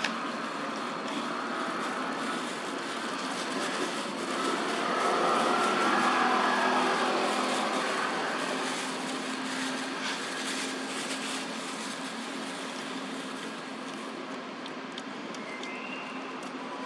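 A motor vehicle's engine passing by: a steady hum that swells about five seconds in, peaks, then slowly fades away.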